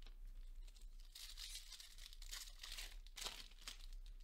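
A Topps Chrome trading-card pack's foil wrapper being torn open and crinkled: faint rustling in bursts, with a sharper crackle about three seconds in.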